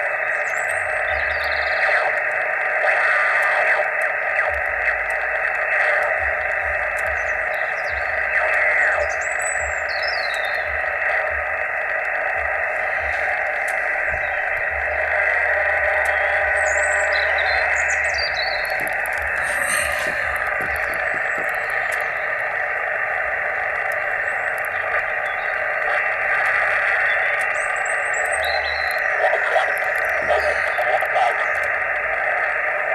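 Yaesu HF transceiver receiving single sideband on the 20-metre amateur band: a steady hiss of static and band noise from its speaker, squeezed into a narrow mid-range band by the receiver's filter, while the tuning knob is turned slowly.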